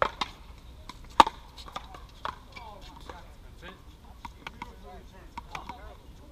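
Sharp, irregular smacks of a paddleball being hit by paddles and bouncing off the court and wall, the loudest about a second in.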